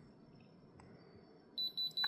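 Handheld thermal diamond tester (Diamond Selector II type) giving a rapid, high-pitched pulsed beep, starting about one and a half seconds in, as its probe on a stone reads in the diamond range.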